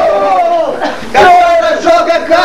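Several voices shout together in long, drawn-out cries whose pitch sinks slowly. The sound dips briefly, and a new loud cry starts just after a second in.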